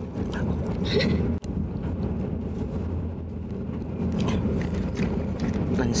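Steady low rumble of a Shinkansen bullet train's passenger cabin at speed, with faint clicks and mouth sounds of chewing close to the microphone.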